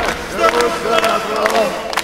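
Rock song's outro: several voices shouting or chanting over the band, with drum hits.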